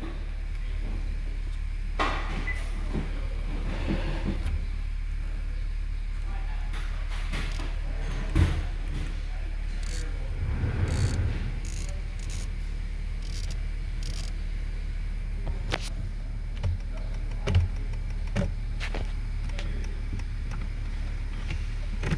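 A 2020 Honda Accord's 1.5-litre four-cylinder engine idling steadily with the cabin fan running. A few scattered clicks and taps come from dashboard buttons and knobs being worked.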